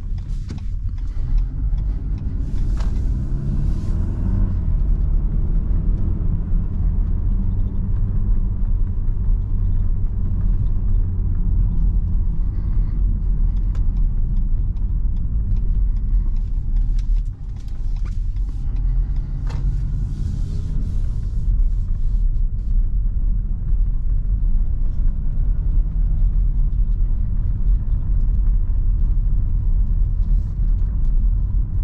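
Interior drive noise of a Mitsubishi ASX II's 1.3-litre four-cylinder petrol engine and tyres at low town speed, a steady low rumble. The engine note rises a few times as the car pulls away and picks up speed, with a brief drop in level around the middle.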